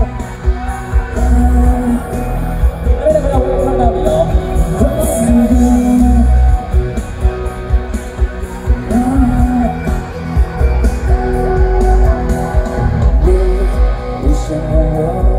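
Live pop song played loud through a concert sound system: a band with guitar and heavy bass, with a male singer's voice over it.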